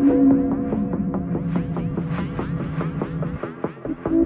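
Techno track: a sustained low synth tone slides down in pitch over the first second and a half and holds over fast, steady percussion, then drops out about three and a half seconds in as the fuller beat comes back.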